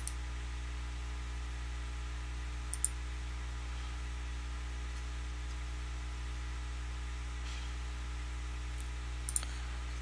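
A few sharp computer mouse clicks: one right at the start, a quick pair about three seconds in, and another pair near the end. They sit over a steady low hum.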